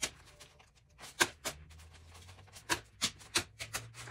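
Paper dollar bills being handled and laid into a plastic cash tray: a scattered run of short, sharp taps and paper flicks, about eight over four seconds.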